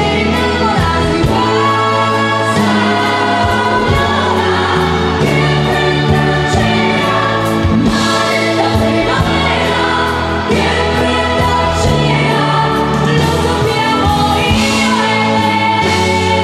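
Live band music: a woman singing into a microphone over a band with electric guitar, keyboards, strong bass notes and a drum kit keeping a steady beat.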